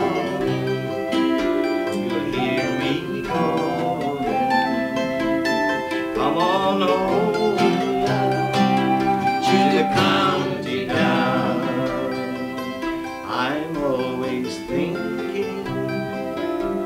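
Tin whistle, steel-string acoustic guitar and a small plucked string instrument playing an Irish folk song together, the guitar strumming under the whistle's melody.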